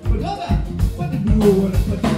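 Live band with drum kit, bass and guitars playing to a steady beat, with a man's voice at the microphone over it.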